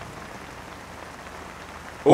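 Steady, even hiss of open-air background noise with no voices or tones in it, cut off by speech at the end.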